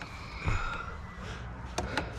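Soft handling knocks, then a single sharp click near the end as a button on a motorhome's overhead electrical control panel is pressed.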